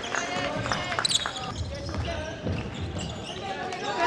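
A basketball being dribbled on an indoor court floor, repeated sharp bounces, with players' voices calling out on the court.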